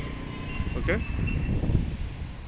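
Low, uneven outdoor rumble with no clear pitch, with a man briefly saying "okay" about a second in.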